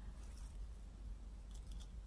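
Faint, short scratchy handling sounds of a kitchen scouring sponge being turned in the fingers, a few soft scrapes at the start and again near the end.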